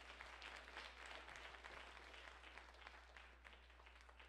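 Congregation applauding, many hands clapping together. It swells in the first second and then slowly dies away.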